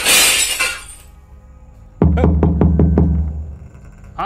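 A loud crash like breaking glass that fades over about a second. About two seconds in, a deep boom carries a fast run of six or seven sharp percussive hits, part of a dramatic film soundtrack.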